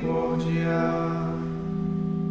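Sung psalm chant: a voice ends a phrase over sustained instrumental accompaniment, which holds a steady chord once the voice stops, a little before the end.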